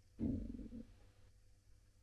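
Pioneer CD recorder's disc mechanism spinning up to start playback: a brief low rumble, about half a second long, a quarter second in.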